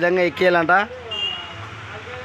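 A man's voice speaking for the first second, then a brief high steady beep over a faint low hum.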